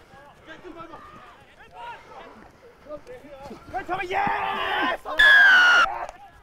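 Rugby players shouting on the pitch around a maul at the try line, louder about four seconds in. Near the end comes a single loud referee's whistle blast, under a second long and falling slightly in pitch, as a try is scored.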